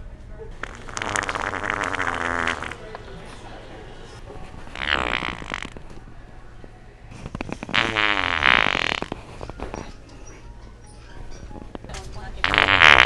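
Three fake fart noises from a handheld fart-noise toy, each lasting one to two seconds. The short one in the middle is between two longer ones, and the last is the loudest.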